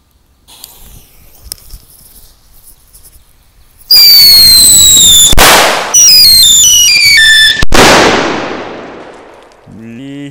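Paper-wrapped Whistling Thunder firecracker going off: about four seconds in, a loud high whistle falling in pitch ends in a sharp bang, a second whistle drops in steps and ends in another bang, then a hiss fades away.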